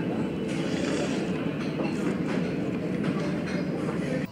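Steady din of a busy restaurant dining room, with many voices blended into a dense background noise.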